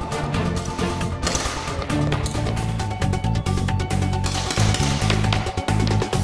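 Background music with a steady beat and low sustained notes.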